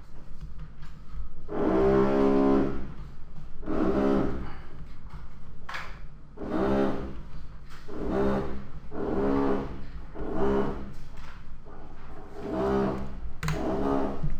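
Construction-work noise: a machine drone with a steady pitch, coming in about eight separate bursts of roughly a second each, over a low background hum.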